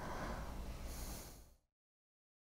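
A woman's faint breath through the nose over quiet room noise, cutting off to silence about one and a half seconds in.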